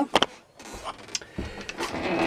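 A few faint, light clicks and a dull low knock, handling sounds with no steady machine noise standing out.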